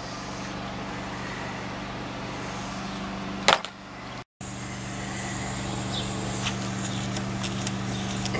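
Steady low hum of running air-conditioning equipment, with a single knock about three and a half seconds in.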